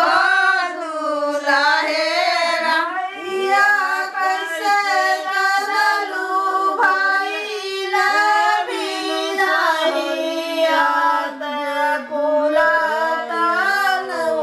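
Women's voices singing a traditional wedding song (geet) together, a continuous melodic line with no drums or other instruments.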